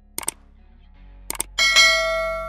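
Subscribe-button animation sound effects: a quick double mouse click, another double click about a second later, then a bright bell ding from about one and a half seconds in that rings on.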